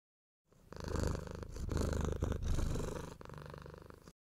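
A cat purring, a low fast rattle that starts just under a second in and runs in long stretches with short breaks between breaths.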